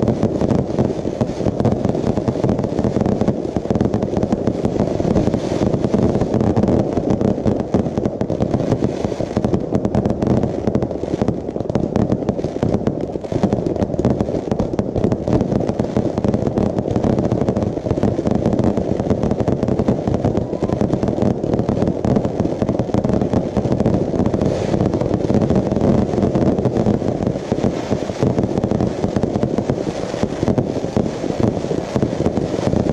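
Fireworks display in a continuous barrage: aerial shells and ground batteries firing and bursting in a dense, unbroken rapid succession of booms and bangs, loud and steady throughout.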